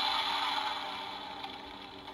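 Electronic fire-breathing sound effect from a Transformers Dragonstorm toy's built-in speaker: a crackling hiss that fades away over about a second and a half.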